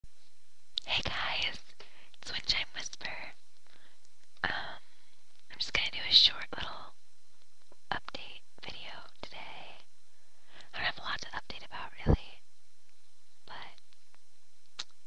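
A person whispering in short phrases with pauses between them, with one low bump near the end.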